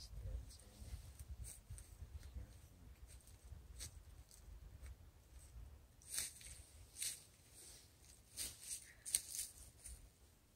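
Faint wind rumbling on the microphone. In the second half come a few short, sharp rustles.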